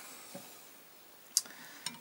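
Two sharp clicks about half a second apart, the first much louder. They come from a micrometer being handled on a steel motorcycle crankshaft while it is moved from one main journal to the next.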